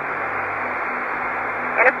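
Steady hiss of the space shuttle's space-to-ground radio downlink, with a faint low hum under it, while the astronaut's voice pauses. The voice returns near the end.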